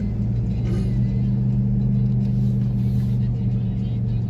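Inside a car driving slowly: steady engine hum and road rumble.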